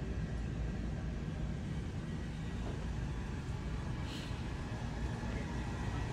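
Steady low rumble of a large store's background noise, with a faint short sound about four seconds in.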